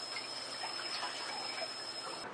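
Kitchen faucet running a thin, steady stream of water into the sink.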